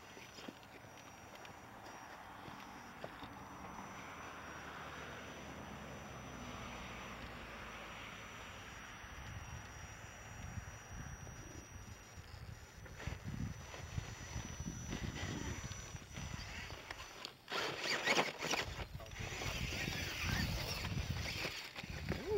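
Electric RC rock crawler creeping over granite, a faint high motor whine under the outdoor background. In the last few seconds there is loud, irregular scuffing and rustling of footsteps in dry pine needles and on rock.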